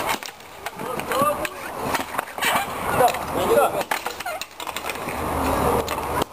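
Roller hockey in play: inline skate wheels rolling and scraping on the rink surface, with a few sharp knocks of sticks and puck and players' voices calling out.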